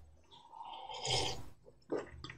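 A man sipping a drink from a mug: one short, soft sip about a second into a pause.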